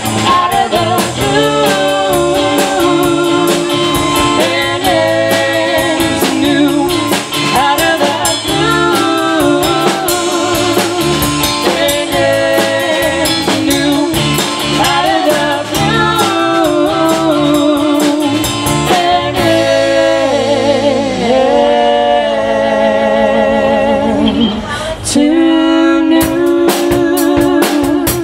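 Live band playing: electric guitar, electric bass and drum kit, with a wavering melody line held over the beat. The cymbals drop out for several seconds near the end, then the band comes back in together after a brief dip.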